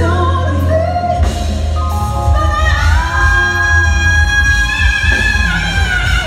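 Live neo-soul performance: a woman singing over a band with steady bass. A little over two seconds in her voice glides up and holds one long note for about two seconds.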